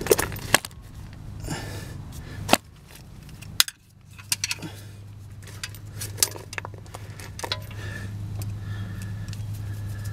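Scattered small metallic clicks and clinks of a socket on a long extension as a bolt is started by hand into a car's aluminium oil pan. A steady low hum runs underneath.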